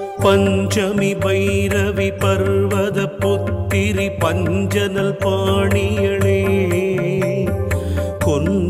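Carnatic-style devotional Devi hymn, sung by women in an ornamented, wavering melody over a steady drone with light percussion.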